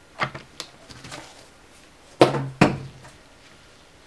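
LCD glass panel being laid and seated into a monitor's backlight frame, knocking against the frame: a few soft taps in the first second, then two louder knocks about half a second apart, a little past the middle.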